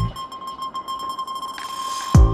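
Background music in a break: the drums and bass drop out, leaving a single held high electronic note over a soft hiss, and the beat comes back at the very end.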